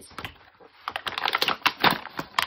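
Light clicks of small plastic toy cups being handled, then, from about a second in, a dense crackling rustle of paper packaging as a wrapped bundle of plastic toy plates and food is pulled out.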